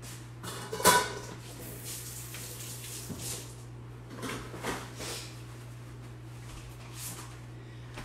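Kitchen things being moved and set down on a stone countertop: a sharp clack about a second in, then a few lighter knocks and clinks, over a steady low hum.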